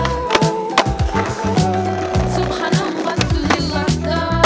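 A music track with a steady bass line, mixed with the sound of a skateboard on concrete: wheels rolling and sharp clacks of the board.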